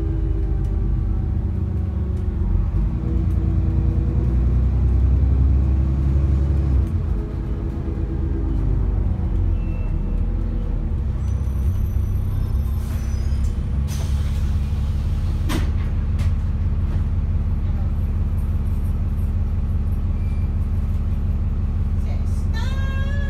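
ADL Enviro 400 double-decker bus engine heard from inside the bus, its note rising and falling as the bus drives, then holding a steady hum from about two-thirds of the way through. A brief hiss of air from the brakes comes just before the note steadies, with a couple of sharp clicks.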